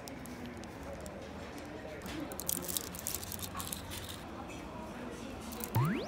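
Café background murmur of voices with light clicks of cutlery on a plate, a cluster of them about two to three seconds in. Just before the end, a short sound effect sweeps quickly up in pitch.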